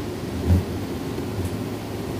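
Handheld microphone being handled, with a low bump about half a second in over a steady low hum from the sound system.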